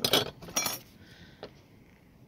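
Small corroded metal pieces clinking against each other as one is picked up from a pile of finds: two sharp clinks about half a second apart, then a lighter click.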